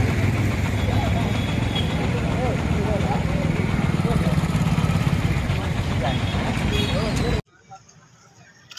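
Loud outdoor noise of an engine running, with scattered voices of a crowd. It cuts off suddenly about seven seconds in.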